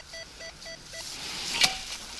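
Rutus Alter 71 metal detector giving its target tone: about five short, same-pitched beeps in the first second, the response to a buried metal target that reads 39, which the detectorist guesses is a cartridge case. A single sharp knock follows about a second and a half in.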